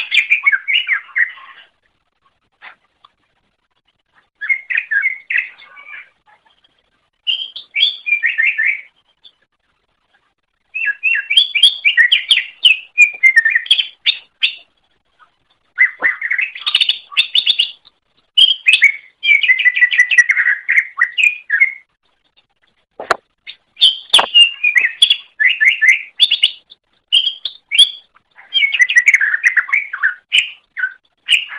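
Cucak ijo (greater green leafbird) singing in bursts of rapid, high chirping phrases, each one to three seconds long with short pauses between them. Two sharp clicks come a little past the middle.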